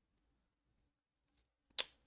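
Near silence, then one short sharp click near the end from a pair of hobby sprue cutters.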